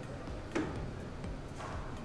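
Footsteps on a hard floor: two separate steps about a second apart, the first sharper than the second.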